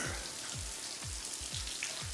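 Showers running in a tiled communal shower room: a steady spray of water hissing onto the tiles, with soft low thuds underneath.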